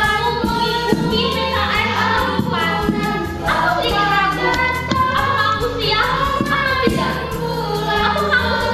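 A group of girls singing a song together, one voice carried on a microphone, over a steady low musical accompaniment.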